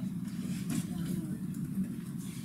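Laptop keyboard keys clicking a few times over a steady low room hum.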